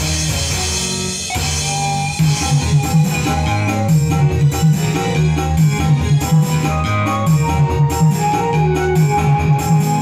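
Instrumental break of a dangdut song played live on an orgen tunggal single-keyboard arranger setup through a PA. A keyboard melody runs over a programmed drum beat and a pulsing bass line, and the beat gets stronger about two seconds in.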